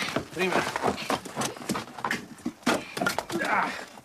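Scattered sharp knocks of wood on wood as a hatchet and a log of firewood are handled on a chopping block to split kindling, mixed with people's voices.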